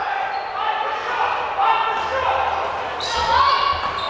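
A basketball being dribbled on a hardwood gym floor, with voices in the background.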